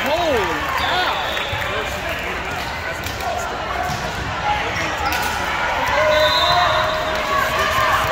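Volleyball gym din: balls thudding on the hardwood floor and being struck, with players' and spectators' voices calling across the hall.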